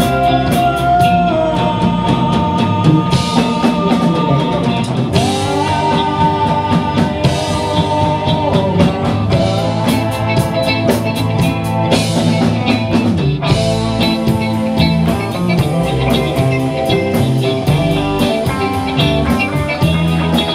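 Live rock band playing a song: electric guitars, bass guitar, drum kit and keyboard, with a singer's lead vocal holding long notes over the band.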